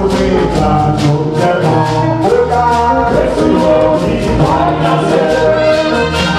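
Church choir and lead singer performing gospel music with band accompaniment over a steady, quick percussion beat.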